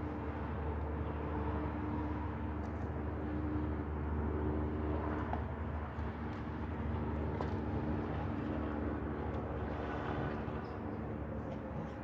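A steady motor drone with a constant pitch, with a few faint clicks over it.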